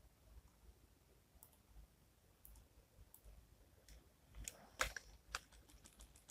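Faint computer mouse clicks and keyboard key presses, scattered, with a brief cluster of sharper clicks about four and a half seconds in.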